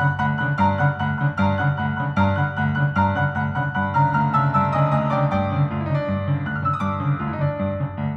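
Solo piano music: steady repeated chords in the low register under a slow melody, with a line of notes stepping downward in the second half.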